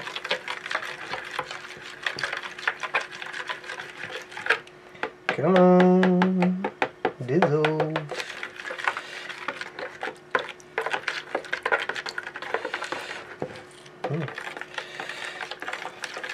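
Flat metal spatula stirring liquid dye in a metal pot, making a quick, uneven run of small clicks and scrapes against the pot's side and bottom. About five seconds in, a voice hums a short two-part "mm-hmm", the loudest sound in the stretch.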